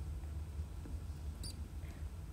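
Low steady hum of room and microphone noise, with one brief faint high squeak-like click about one and a half seconds in.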